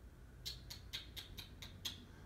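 A quick run of faint, light clicks, about eight in a second and a half, starting about half a second in.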